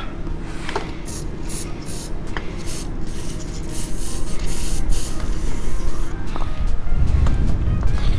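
Aerosol can of penetrating oil spraying in a run of short hisses, then one longer spray, onto a rusted, seized exhaust clamp bolt to loosen it.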